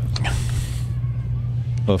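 A steady low hum runs under the pause in the talk. A brief soft hiss lasts most of a second near the start.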